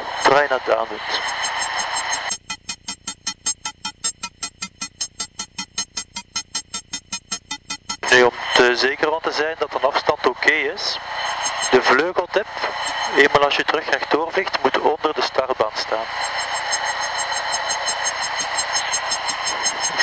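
Radio voice transmissions heard through the aircraft intercom. Between them runs a fast, even pulsing of about five beats a second, which stops whenever a transmission comes through.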